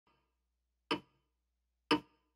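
Sharp, evenly spaced ticks, one a second, each dying away quickly: two ticks, about one and two seconds in.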